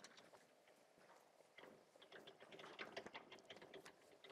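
Chalk on a blackboard: faint quick taps and clicks of writing, sparse at first and becoming a rapid busy run from about one and a half seconds in.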